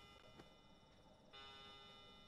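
Near silence: a faint clock ticking about once a second in a quiet room, over a faint steady hum.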